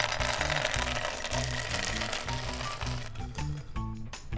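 Dried cacao beans pouring out of a tipped glass jar onto a marble countertop: a dense rattling clatter that starts suddenly and thins out after about three seconds. Background music runs underneath.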